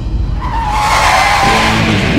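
Tyre squeal of an off-road jeep skidding on a dirt surface. A high whine starts about half a second in and slides slightly lower in pitch, over soundtrack music.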